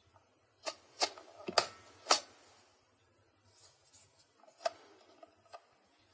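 Sharp plastic clicks, four within about a second and a half, then softer rattling with a couple of lighter clicks, as foam darts are worked by hand through a modified Nerf dart magazine with a spring-loaded flap.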